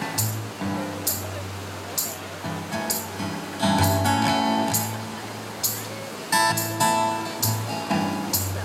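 A live acoustic band: strummed acoustic guitars over upright bass, with drum and cymbal hits about once a second.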